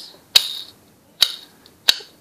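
Three sharp clicks from a fingerboard being handled, its small wheels and trucks knocking as it is turned over and tapped.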